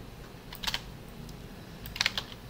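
Computer keyboard keys being typed: a short cluster of keystrokes a little before halfway and a few more near the end.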